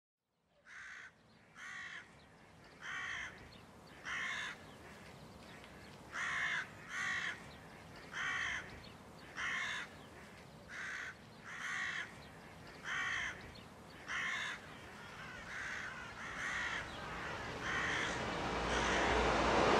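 A crow cawing again and again, roughly once a second, over a steady rushing noise like wind that swells toward the end.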